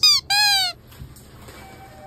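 Cartoon-style sound effect added in editing: two short whistle-like notes, the second lower and longer, bending up and then down.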